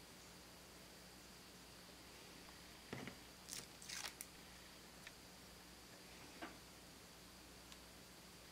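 Near silence over a faint steady hum, broken by a few soft clicks and a short rustle about three to four seconds in and one more small tick a little past six seconds. These come from pumpkin seeds being picked up off a wooden table and set onto a liquid-latex strip on a plastic tray.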